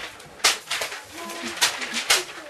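Sheets of paper being snatched up and flung, making sharp paper rustles and flaps: one about half a second in and more near the end.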